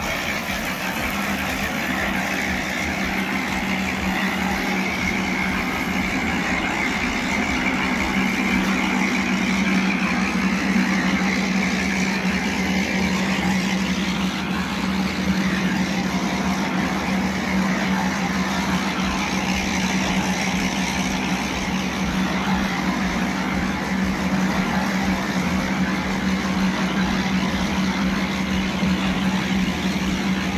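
A machine engine running steadily, a constant hum over an even noise.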